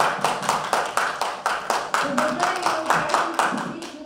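Hand clapping in a quick, steady rhythm, about five claps a second, stopping just before the end; voices talk over it from about halfway.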